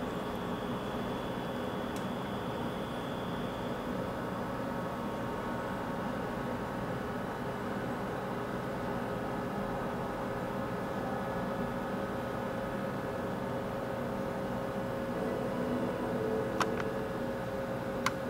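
Desktop PC's cooling fans running during boot, a steady whirring hum with a few faint steady tones. A single faint click comes near the end.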